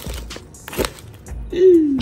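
Dressed salad being tossed with tongs in a mixing bowl, a soft wet rustle with a light knock about a second in, over background music. Near the end a voice makes a short sound that falls in pitch.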